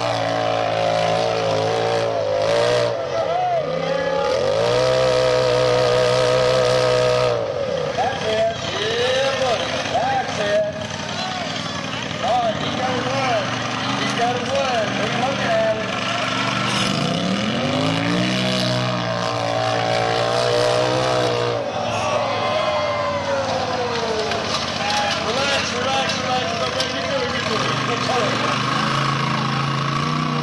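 Rock bouncer buggy's engine revving hard on a steep dirt hill climb, the revs held high for a few seconds at a time and then dropping and rising again.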